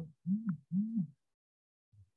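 A man humming two short 'hm' sounds in quick succession, each rising and then falling in pitch.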